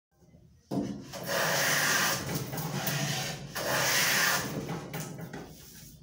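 Hand plane being pushed along a wooden board: two long scraping strokes, the first starting just under a second in and the second starting about halfway through.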